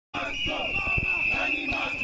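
Protesters chanting and shouting while whistles are blown on one steady high note, with low thumps among the voices.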